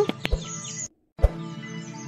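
Soft background music with birds chirping. A few light clicks early on, and the sound cuts out completely for a moment about a second in before resuming.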